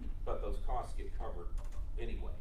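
A voice speaking quietly over the clicking of keyboard typing.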